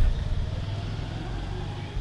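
Steady low rumble of street traffic, with a motorbike among the vehicles on the road.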